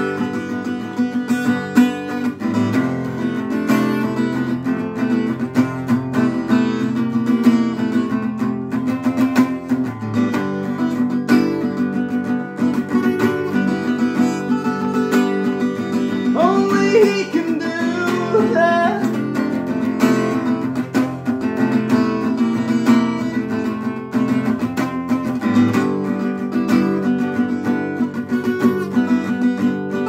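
Acoustic guitar strummed steadily in chords throughout, with a man singing a short phrase a little past halfway through.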